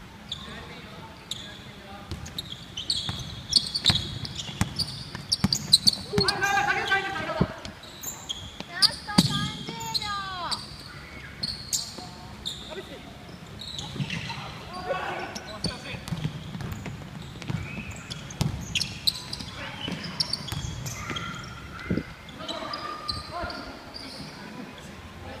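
Basketball pickup game on a hardwood gym floor: the ball bouncing and thudding, with sneakers squeaking. Players shout to each other, loudest about 6 and 9 seconds in.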